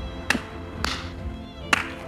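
Tense drama underscore: sustained held notes punctuated by three sharp percussive hits, the last and loudest near the end.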